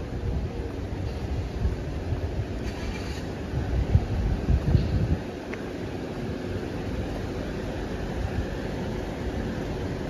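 Street ambience heard while walking: a steady low rumble of road traffic and wind on the microphone, louder for a moment about four to five seconds in.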